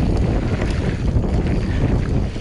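Wind buffeting the microphone during a fast mountain-bike descent, mixed with the rumble of tyres rolling over a dry, dusty dirt trail.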